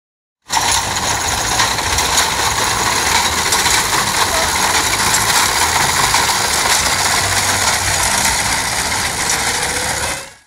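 Horse-drawn reaper-binder cutting and binding wheat: a loud, steady, dense mechanical clatter of its knife and binding mechanism, starting about half a second in.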